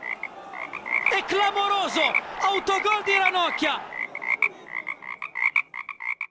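Frog croaking sound effect: a steady run of short croaks, about three a second, with two longer, lower-pitched croaking calls in the middle of it.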